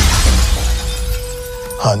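Glass shattering in a loud crash that fades away over about a second and a half, under trailer music holding one long note. A man's voice comes in near the end.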